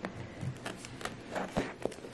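A pocket knife cutting open a plastic-wrapped cardboard gift box, then the flap being pulled back: faint scraping and crinkling with a few small sharp clicks.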